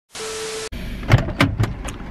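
A half-second burst of TV-static hiss with one steady tone running through it, cutting off sharply: a glitch-transition sound effect. It is followed by a run of sharp clicks and knocks over a low rumble.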